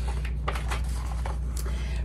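Pages of a picture book being turned by hand: a few short papery rustles over a steady low hum.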